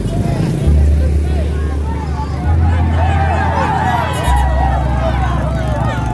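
A roadside crowd shouting and cheering, many voices overlapping and swelling about halfway through, with vehicle engines running. Beneath it is a strong, deep drone that shifts pitch in steps a few times.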